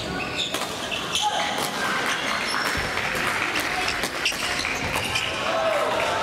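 Badminton rallies on several courts at once: sharp racket hits on shuttlecocks and shoe squeaks on the court floor, over background voices in a large sports hall.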